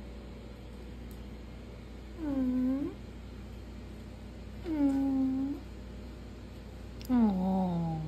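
A cat meowing three times. The first two meows are short, dipping in pitch and rising again. The third is longer and slides downward in pitch near the end.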